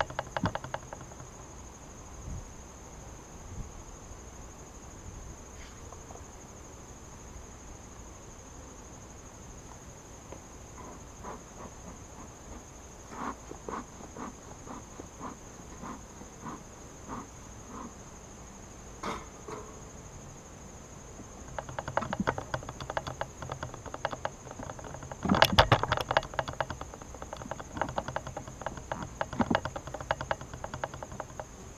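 Steady chirring of insects in the background. A beekeeper's smoker is worked with a loose run of short puffs and clicks through the middle. Near the end come denser knocks and scrapes of wooden hive boxes and frames being pried and handled, the loudest clatter about three quarters of the way through.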